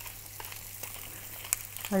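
Duck pieces sizzling in their own fat in a frying pan, with a few faint crunching clicks from a wooden pepper mill being turned over them.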